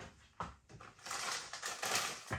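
Plastic snack packet of Bombay mix crinkling and rustling as it is picked up and handled, after a brief knock about half a second in.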